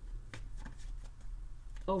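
Tarot cards being shuffled by hand: a run of quick, irregular card flicks and snaps.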